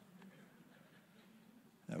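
Near silence: faint room tone in a hall during a pause, with a man's voice starting again just before the end.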